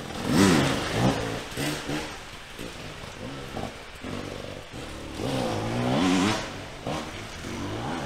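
Off-road dirt bike engine revving as it rides a woodland track, its pitch rising and falling with the throttle. It is loudest about half a second in and again around six seconds.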